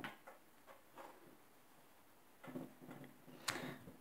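A few faint, irregular clicks and taps of handling, the sharpest about three and a half seconds in, with a faint low murmur in the last second and a half.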